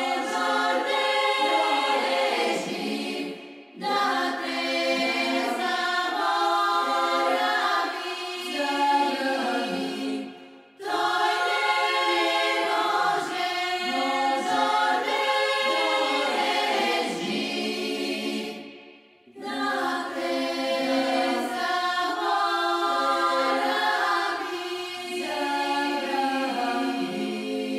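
A choir singing, several voices holding and moving between notes in four long phrases, with a brief pause between each.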